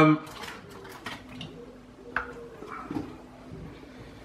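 Quiet handling of a chocolate bar's wrapper on a table: scattered light crinkles and clicks, with one sharper click about two seconds in.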